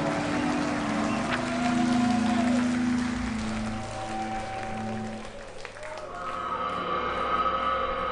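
Live metal band between songs: crowd noise and wavering held tones from the stage, then about six seconds in a steady droning chord starts as the next piece's intro.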